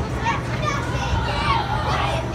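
Children shouting and talking over the steady low drone of a hurricane-simulator capsule's blowers.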